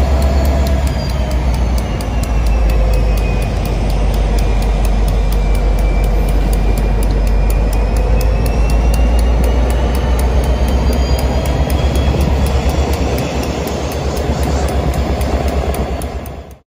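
Diesel freight locomotive running close by at low speed: a loud, steady low engine rumble, with faint high tones slowly rising and falling above it.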